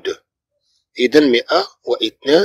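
Speech: a man talking, with a pause of about a second near the start.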